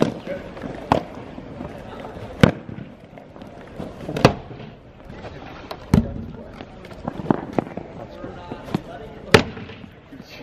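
Hard rubber lacrosse balls striking the rink boards and the goalie's pads and stick during a shooting drill: about ten sharp knocks and bangs at uneven intervals, one every second or so.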